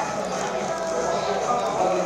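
Indistinct chatter of a busy fast-food restaurant, with close-up chewing of a burger.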